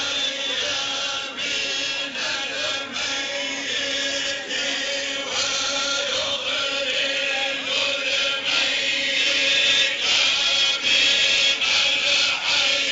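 Voices chanting together over a steady held note, in a religious chant; it gets a little louder in the second half.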